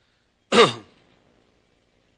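A man clearing his throat once, a short, sharp sound about half a second in whose pitch drops as it fades.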